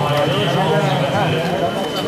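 People talking, with a thin steady high-pitched tone running underneath.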